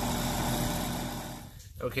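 Air-conditioning condensing unit running steadily with its compressor and condenser fan. The unit has been retrofitted from R22 to R407C. The sound cuts off suddenly about a second and a half in.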